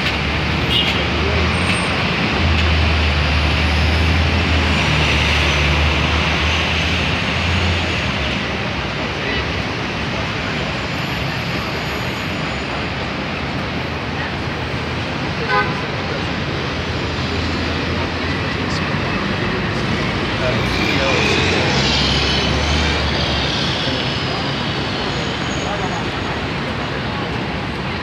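City street traffic: a continuous wash of road noise from passing cars and taxis, with a heavier low engine rumble from nearby vehicles twice. One brief sharp knock about fifteen seconds in.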